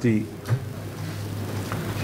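A pause in a man's speech into a microphone: a steady low hum runs underneath, with a small click about half a second in and a couple of faint ticks near the end.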